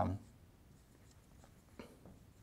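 Dry-erase marker writing on a whiteboard: faint scratching and squeaking strokes as a word is written.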